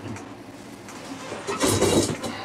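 A vehicle sound: a quiet stretch, then a loud, brief rushing noise about one and a half seconds in, like a car going by.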